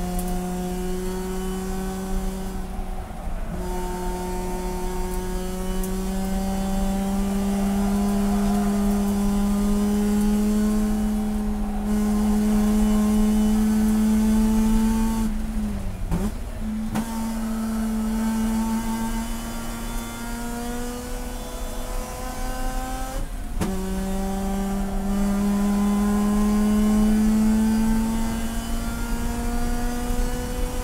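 Race car engine heard from inside the cockpit at full throttle, its pitch climbing steadily through each gear. There is a short break for an upshift about three seconds in, a lift with a drop in pitch for a corner around sixteen seconds, and another upshift about twenty-three seconds in.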